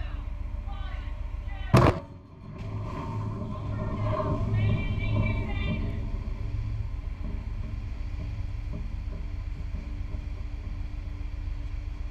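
A large underwater explosive charge detonating in a naval ship shock trial: one sharp boom about two seconds in, then a low rumble that swells for a few seconds as the water plume rises, over a steady low hum.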